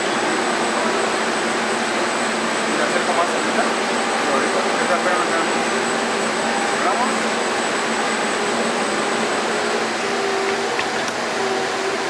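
Steady machine noise from a running multi-tier cooling tunnel and its production line: a constant rush of air like fans or blowers, with a thin high whine on top. Faint voices come through underneath.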